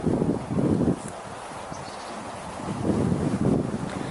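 Wind buffeting the microphone in gusts: strong in the first second, a lull, then rising again near the end.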